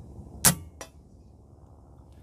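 A Benjamin Marauder .177 pre-charged pneumatic air rifle fires a single low-velocity 12.5-grain NSA slug, giving one sharp crack. A fainter click follows about a third of a second later.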